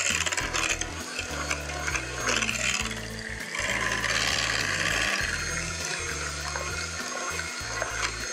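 Electric hand mixer beating thick pumpkin cheesecake batter in a glass bowl: motor running and beaters churning through the batter, a little louder around the middle.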